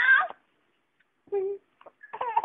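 Young baby vocalizing: a short high-pitched squeal at the start, then after about a second's pause a brief, steadier coo.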